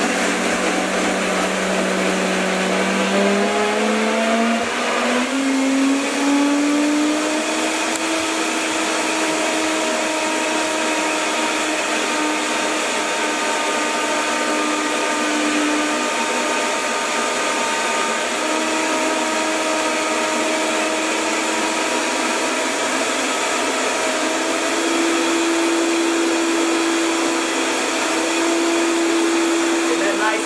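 Countertop blender running on a smoothie setting, grinding frozen mango, coconut milk and ice while a tamper is pushed down through the lid. The motor's whine climbs in pitch over the first several seconds as it speeds up, then runs steady, wavering briefly about halfway through and settling a little higher near the end.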